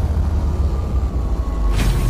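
Intro-animation sound effect: a steady deep rumble with a faint tone slowly falling in pitch, and a short whoosh near the end.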